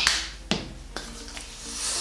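Three sharp clicks about half a second apart, the first loudest, then hands rubbing body cream together with a rising hiss near the end. Soft background music plays underneath.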